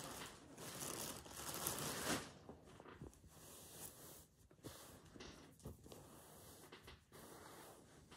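Rustling and scratching of fabric and wadding as stuffing is worked into a sewn cloth toy body and the stuffed body is handled, louder over the first couple of seconds and then softer with a few brief scratches.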